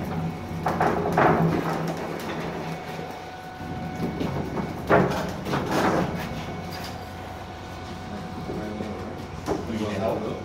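Wheels of a dolly and casters rumbling across the floor as a heavy metal frame and a wooden workbench are rolled about, with a few short men's calls about a second in and again around five seconds in.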